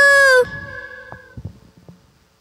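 A girl's voice singing the held final note of a pop song through a microphone, cut off about half a second in, followed by a fading echo and a few knocks as the microphone is lowered.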